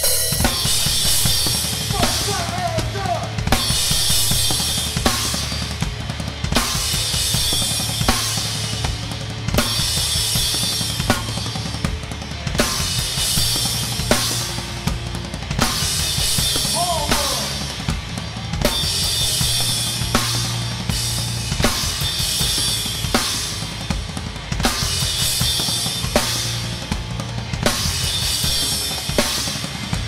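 Hardcore band playing live, heard from a drum-kit microphone mix: the drum kit leads with pounding kick drum, snare hits and crashing cymbals over loud distorted guitar and bass.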